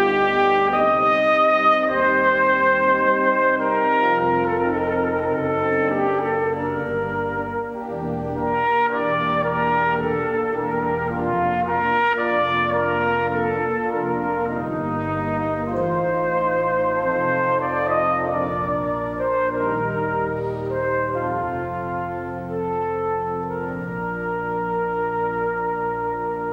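Trumpet and a 96-rank Ruffatti pipe organ playing a piece together: the trumpet carries a melody in held notes over sustained organ chords and deep pedal bass notes.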